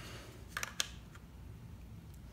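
Two light plastic clicks and a fainter third as two 20V lithium-ion tool battery packs are handled and set against each other, over quiet room tone.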